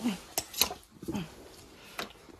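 Scuffle of a Jersey cow resisting a calcium bolus gun being pushed into her mouth: a few sharp knocks and clicks, and two short low grunts that drop in pitch.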